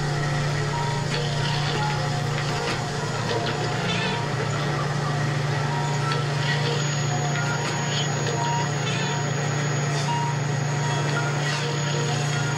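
Tinguely kinetic sculpture machinery running: a steady low motor hum with irregular clicks, clanks and short squeaks from its turning wheels and linkages.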